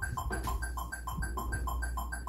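Electronic metronome beeping at 200 beats per minute, about three beats a second, with a lower-pitched tick between each beat.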